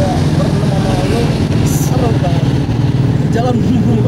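A motorcycle engine idling steadily close by, with several people talking over it.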